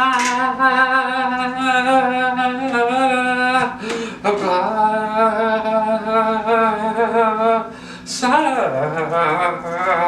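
A man singing long drawn-out syllables ('Wa', 'Ba', 'Sa'), each held as one sustained note for about three seconds. The notes break briefly about four seconds in and again about eight seconds in, and the pitch wavers at times.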